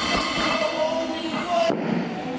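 Background music with steady held tones, with a few low thumps in the first half second.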